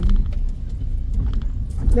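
Car rolling slowly along a cobblestone street: a steady low rumble of tyres and engine, with a few faint clicks.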